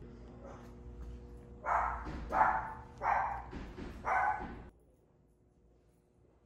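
A dog barks four times over a steady low hum, and the hum cuts off suddenly just after the last bark.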